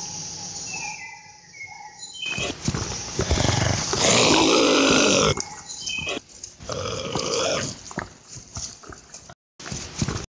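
Dinosaur creature roars voiced for an animated monster: several rough calls, the loudest and longest about four seconds in and lasting over a second.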